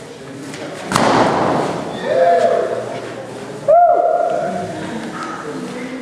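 A balloon bursts with one loud, sharp bang about a second in, echoing in a large hall. Voices follow with two long drawn-out calls, the louder one starting just before the fourth second.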